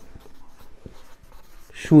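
Marker pen writing on paper: a run of faint, short scratching strokes.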